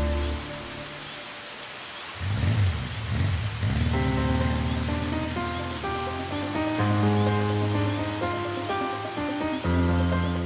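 Heavy rain falling steadily, with a low rumble about two seconds in. Sustained notes of a film score come in about four seconds in and carry on over the rain.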